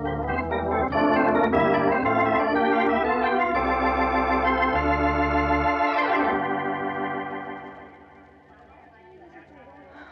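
Short organ music bridge marking a scene change in a radio drama: sustained chords with moving notes, held, then fading out about seven or eight seconds in.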